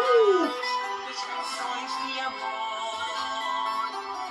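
A slow Portuguese fado-style song playing: a boy sings long held notes over Portuguese guitar and accompaniment. Right at the start a man gives a brief "ooh" that slides up and back down.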